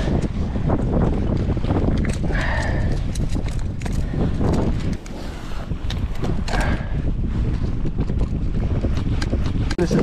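Wind buffeting the microphone in a steady low rumble, with scattered knocks and clicks from handling the fish and the gear aboard the kayak.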